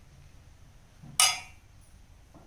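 A single sharp metallic clink about a second in, ringing briefly: a stainless steel serving spoon knocking against a steel pot.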